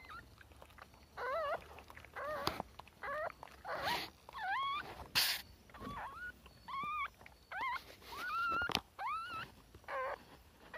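Newborn puppies squeaking and whimpering: a string of short, wavering, high-pitched cries, roughly one a second, starting about a second in. Two brief rustling noises come a little before and after the middle.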